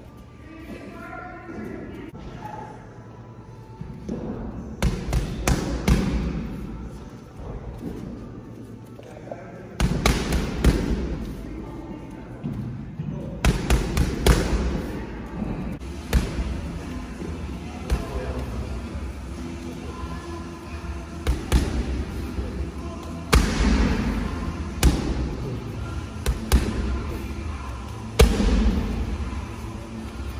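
Kicks and punches smacking into Muay Thai pads, a string of sharp impacts with gaps of a second or more, the hardest ones about ten seconds in and in the second half. Background music plays under them.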